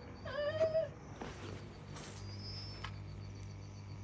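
A cat meowing once, a short call a few tenths of a second in, over a low steady hum.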